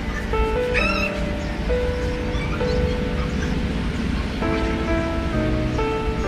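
Background music: a melody of held notes that step from one pitch to the next over a steady low accompaniment.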